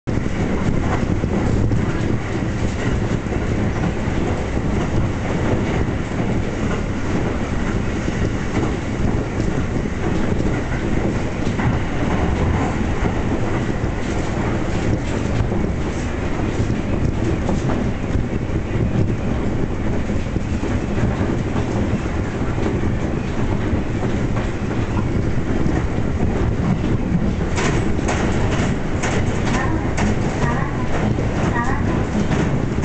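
Electric commuter train of the JR Yokosuka Line heard from inside the car while running at speed: a steady rumble of wheels on rail with rhythmic clickety-clack. A run of sharper clacks comes near the end.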